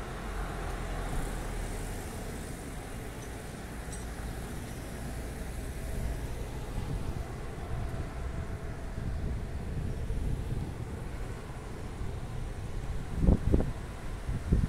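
Town-centre road traffic: cars and buses running along the street, a steady low rumble. Near the end, a few gusts of wind buffet the microphone.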